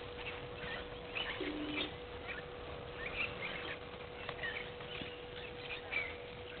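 Wild birds calling, many short chirps and whistles overlapping at irregular intervals, over a steady hum.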